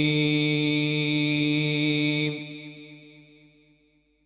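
A young man's voice in melodic Quran recitation (tajweed), holding one long note at a steady pitch. It stops a little over two seconds in, and its reverberation dies away.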